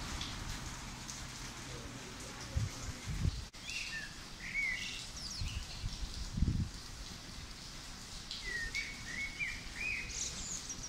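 A small songbird chirping in short rising and falling phrases, twice, over a steady hiss of rain, with a few low thumps.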